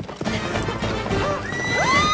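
Horse whinnying over galloping hooves, with a high, drawn-out call rising near the end.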